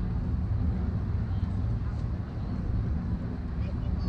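Outdoor ambience on a waterfront walkway: a steady low rumble, with faint, indistinct voices of people in the distance.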